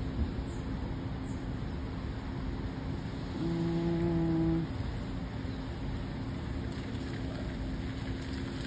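Steady traffic and rain noise in a wet car park, with a low, steady horn-like tone held for about a second in the middle. A few faint, high chirps come and go.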